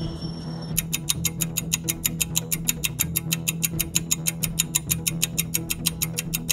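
Background music with a fast, even ticking laid over it, about five ticks a second, starting about a second in: a clock-ticking sound effect marking time passing.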